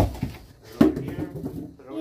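Two sharp knocks from a large cardboard TV box being handled as it is lifted off the set: one right at the start and a louder one a little under a second in.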